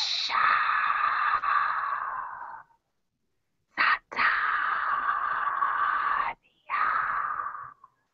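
A person making three long, breathy, drawn-out vocal sounds without words. The first lasts about two and a half seconds, a second of similar length follows after a pause, and a shorter one comes near the end. Heard over a video-call connection.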